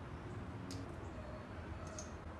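Faint handling sounds over a low steady hum: two light clicks as small rubber-and-metal bolt seals are set onto the valve cover studs.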